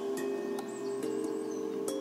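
Soft ambient meditation background music: held tones with light chime strikes, the notes shifting about a second in.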